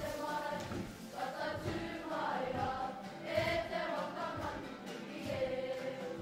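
A kapa haka group of school students singing together, holding long notes in unison.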